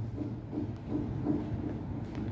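A pause in speech: quiet room tone with a low steady hum.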